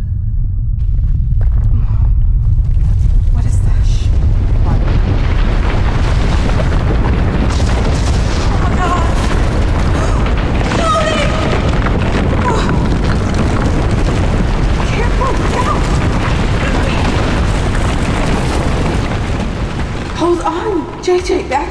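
A long, loud rumbling boom, a drama sound effect of a blast or collapse, swelling over the first couple of seconds and rumbling on steadily before easing near the end.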